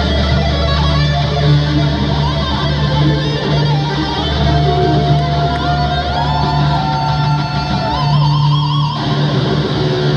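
Electric guitar solo played live and loud: long held notes that bend in pitch and waver with vibrato, with a gliding rise in pitch about six seconds in. A steady low drone sits underneath.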